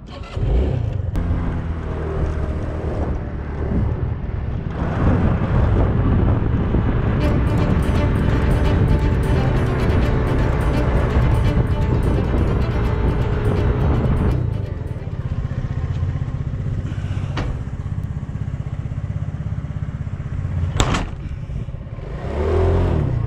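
Small motorcycle engine running as it is ridden, louder through the middle stretch.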